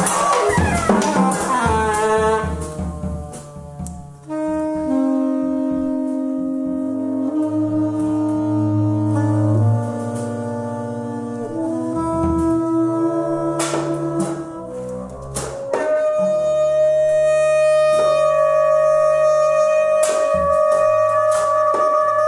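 Improvised jazz ensemble music. A dense, busy passage at the start gives way to long held notes stacked in chords that change every second or two over a low sustained bass. It settles into one steady held chord for the second half.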